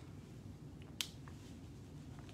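Reading glasses being handled and put on: one sharp click about a second in, with a few fainter ticks around it, over quiet room tone.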